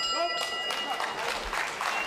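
Ringside bell ringing at the end of a kickboxing round, its ring fading away in about a second, over crowd applause and chatter.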